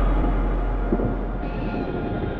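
Breakdown in a club DJ set with no beat: a deep sub-bass rumble from the sound system slowly fades, with a dense wash of lingering sound above it.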